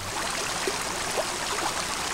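Stream water flowing, a steady rushing hiss.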